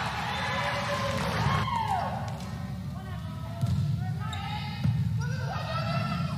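A volleyball bouncing a few times on a hardwood gym floor, each bounce a short thud, over the murmur of voices in a large hall.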